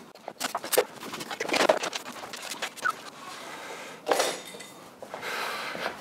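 Metal light-stand and boom-arm hardware clicking and knocking as it is handled and fitted together into a small rig. There is a cluster of sharp knocks in the first two seconds and another knock about four seconds in.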